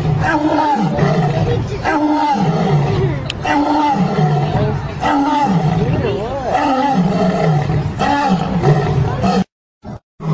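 A male lion and a lioness calling together: a rhythmic series of short roaring grunts, about one a second, each with a gliding, voice-like pitch. The calls cut off suddenly near the end.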